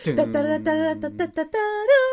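A person humming a riff from a song: a short run of held notes that steps in pitch and rises near the end.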